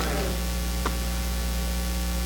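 Steady electrical mains hum with an even hiss underneath, and one faint click a little under a second in.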